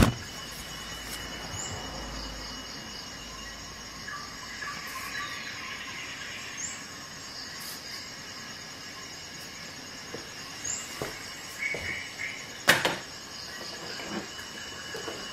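A paper CD sleeve being handled, with light crackling rustles and a few soft clicks, then a single sharp knock near the end, as of something set down on the desk. Under it there is a steady faint high-pitched background whine.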